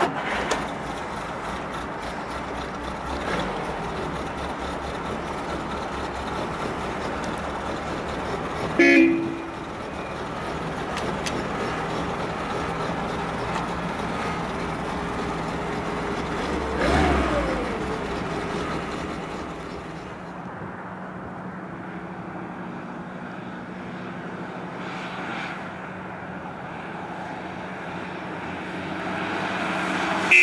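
A 1956 Mercedes-Benz 190SL's four-cylinder engine started with the key and then idling steadily at about 1,000 rpm. Its horn gives one short toot about nine seconds in, and a brief rev about seventeen seconds in falls back to idle.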